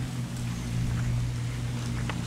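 A steady, low mechanical hum holding one pitch, like a motor running without change.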